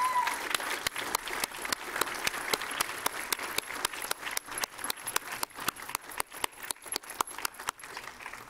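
Members of a council chamber applauding, many overlapping hand claps, thinning out near the end.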